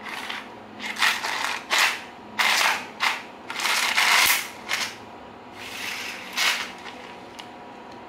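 A string of short scraping, rustling noises, about eight in the space of several seconds, as fluorescent green line is pulled out of a Tajima chalk line reel and handled.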